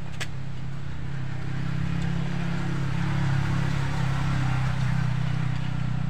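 An engine running with a steady low hum, growing a little louder from about two seconds in, as from a motor vehicle nearby.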